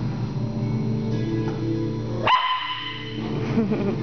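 Dog making play-fight noises, growls and barks, while wrestling with another dog, over music; a sharp rising high note sounds a little past halfway.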